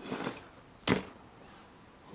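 Handling noise from Corgi die-cast toy helicopters on a tabletop: a brief rustle, then one sharp click about a second in as a model is moved or set down.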